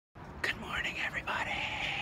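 A man speaking softly, his words too quiet to make out.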